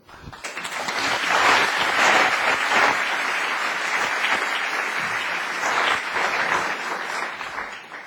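Audience applauding, swelling over the first second, holding steady, then tapering off near the end.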